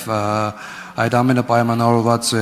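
A man speaking Armenian, with one syllable held long near the start.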